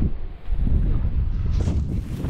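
Wind buffeting a phone's microphone: a low, uneven rumble that grows stronger about half a second in.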